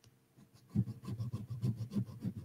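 A jewelry piece rubbed back and forth on a black testing stone in quick scratchy strokes, several a second, starting a little under a second in. This lays down a metal streak for acid-testing whether the piece is gold.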